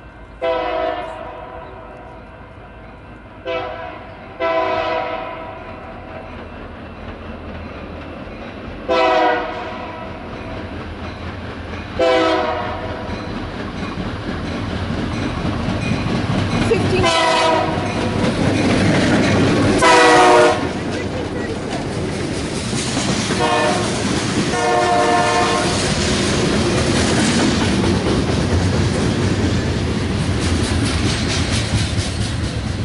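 Freight train's locomotive horn sounding a series of short and longer blasts, each a chord of several tones, as the train approaches. From about halfway through, the rumble and clatter of the passing train's wheels and cars grows and stays loud.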